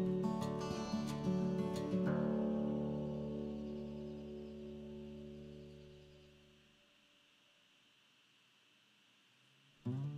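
Background acoustic guitar music: a few plucked notes, then a chord left ringing that fades away to near silence about seven seconds in.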